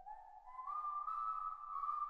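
Faint, eerie whistling: long, high notes that slide upward and then hold, overlapping slightly.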